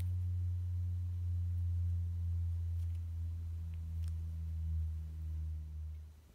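A steady low hum with a weaker overtone above it, cutting off about six seconds in. A few faint clicks sound over it, from small plastic figure parts being handled.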